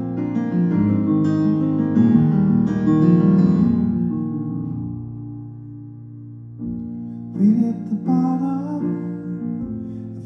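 Steinway grand piano playing chords for the first few seconds, the notes dying away to a quiet stretch near the middle. From about seven seconds in the piano comes back in under a man's singing voice.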